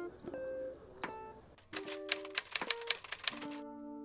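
Typewriter sound effect: a rapid run of about a dozen sharp key clacks lasting nearly two seconds, starting near the middle. It plays over plucked-guitar background music.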